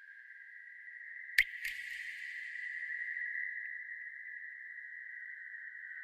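A steady, high-pitched ringing tone from an eerie sound effect, with a sharp click about a second and a half in, a softer second click just after, and a brief hiss that swells and fades.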